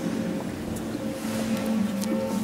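A group of young people singing together, holding long sustained notes that shift in pitch every second or so, probably with guitar accompaniment.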